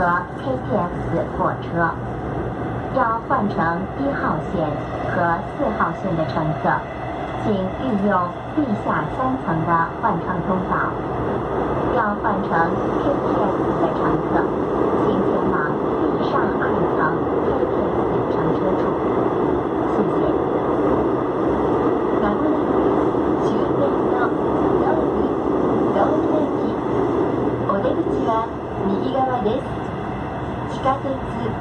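Cabin noise of an AREX 1000 series express train running, with a voice talking over it through roughly the first half. After that a steady running rumble fills the cabin until near the end.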